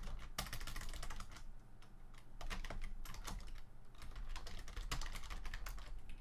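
Typing on a computer keyboard: quick runs of keystrokes with a short lull about two seconds in.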